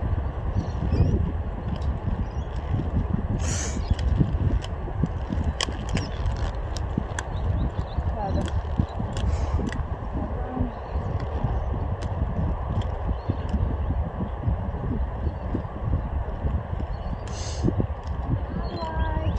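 Quad roller skate wheels rolling and scuffing on a hard outdoor court, a steady low rumble scattered with small clicks and knocks from the skates.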